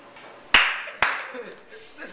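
Two sharp hand claps about half a second apart.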